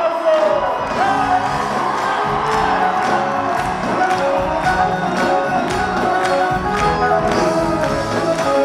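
Live Arabic pop band playing a melody over a steady hand-drum beat, with crowd noise from the audience underneath.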